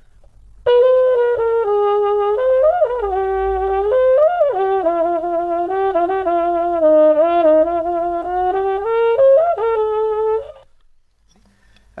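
Trumpet played through a Denis Wick adjustable cup mute with the cup closed right up against the bell, used as a practice mute: a muffled tone without bright top. One melodic phrase starts about a second in, moves up and down in pitch, and ends on a held note that stops about a second and a half before the end.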